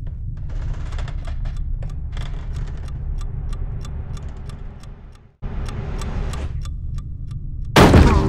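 A pocket watch ticking, sharp clicks about four a second, over a steady low rumble. The ticking and rumble cut out briefly about five seconds in, then resume.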